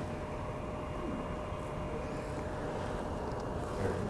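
Steady room noise: an even hiss and low hum with a faint steady tone, and no distinct events.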